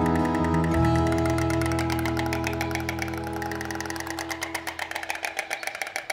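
Background music: held chords over a quick, steady pulse, fading out over the last few seconds.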